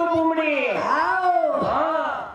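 A woman singing a Banjara bhajan into a microphone: one long steady note, then the voice sliding down and up in pitch several times.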